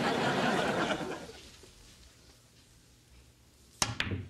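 Studio audience laughter for about the first second, dying away to quiet. Then, near the end, a single sharp clack as a pool shot is struck.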